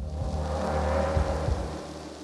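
Sound-effect rain hiss over a low thunder-like rumble, with a few dull thuds; the rain swells about a second in and then eases off.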